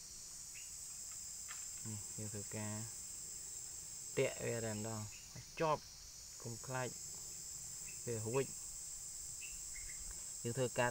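Insects outdoors keep up a steady, high-pitched buzzing drone. A few short bursts of speech come over it.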